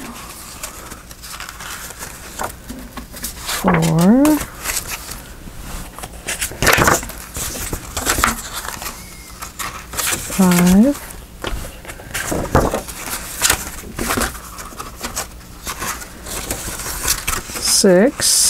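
Folded paper pages and card stock being handled, shuffled and tapped together: repeated rustling and sharp paper clicks and scrapes, with two short murmured syllables from the person working.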